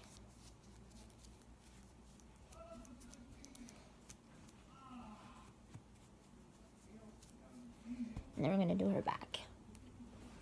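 Faint handling noise of hands rubbing powder over a silicone doll's skin: soft rubbing with small clicks. Faint background voices come through, and a short louder burst of a voice comes near the end.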